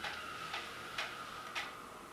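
Four sharp ticks, about half a second apart, over a faint steady high tone that fades away.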